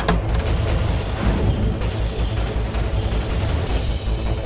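Dramatic background music score with a pulsing low bass, opening with a sharp hit.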